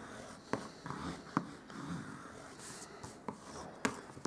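Hands pressing down and handling cardstock on a tabletop: faint paper rubbing and rustling, with a few small sharp clicks.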